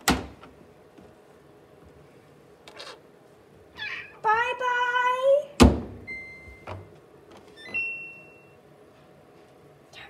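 Front-loading clothes dryer being loaded and started: a thump at the start, the door slammed shut about halfway through, then three electronic beeps from the control panel, the last one longer.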